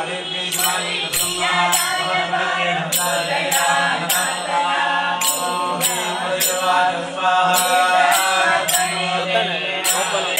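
Women singing a devotional bhajan into a microphone, keeping time with small hand cymbals that clink in a repeating pattern of three strikes, over a steady low drone.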